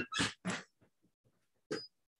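A man's short laugh in two quick breathy bursts, followed by near quiet with a few faint ticks and one more brief sound near the end.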